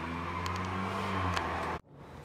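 A steady low motor hum with a faint hiss. It cuts off abruptly shortly before the end.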